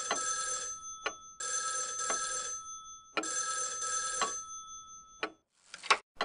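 Telephone bell ringing in three bursts of a bit over a second each, with short gaps between them. A click near the end as the receiver is picked up.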